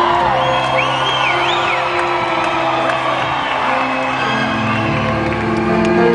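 Live band music with held keyboard chords, a new lower chord coming in about four seconds in. Audience members whoop and cheer over it in the first couple of seconds.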